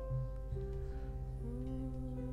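Soft live worship-band music with no singing: long held chords with a few plucked guitar notes.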